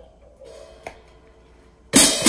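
A small click about a second in, then near the end the hi-hat's two cymbals are brought together loudly by the pedal. The stand has just been repaired and the clutch retightened, so the pedal is working again.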